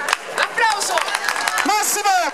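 Scattered hand clapping from the audience, with a man's voice starting to speak over it about half a second in.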